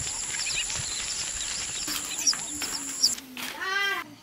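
Rural ambience: a steady high-pitched insect drone with scattered bird chirps, which cuts off abruptly about three seconds in. Near the end comes a short, wavering animal call with a rich, nasal tone.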